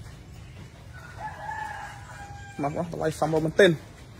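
A rooster crowing: one long, slightly wavering call beginning about a second in and lasting about a second and a half. It is followed by a man's voice, louder, near the end.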